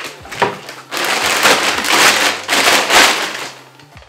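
Clear plastic packaging bag crinkling and rustling as it is pulled off a circular saw, in several loud surges that die down near the end.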